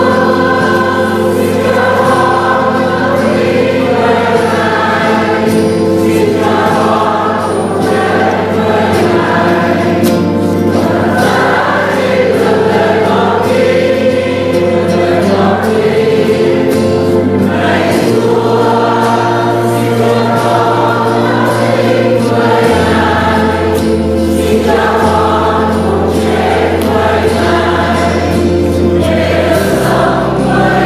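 A large congregation singing a hymn together in Vietnamese, many voices at once, with guitar accompaniment and long held bass notes underneath that change pitch every few seconds.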